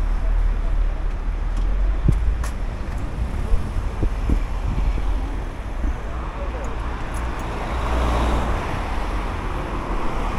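Road traffic on a city street: cars driving by, with one passing close and louder about eight seconds in.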